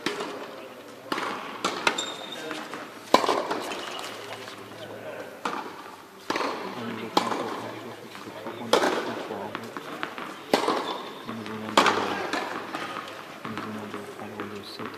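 A series of sharp knocks or thuds, about ten at uneven intervals of one to two seconds, each with a brief echo, over a background of people's voices.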